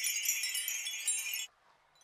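Wind chimes tinkling in thin, high ringing tones from the episode's soundtrack, with the low end cut away. The chimes stop suddenly about one and a half seconds in.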